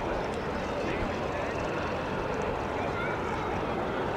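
Steady, distant drone of a Transall C-160's two Rolls-Royce Tyne turboprop engines as it comes in on approach with its gear down.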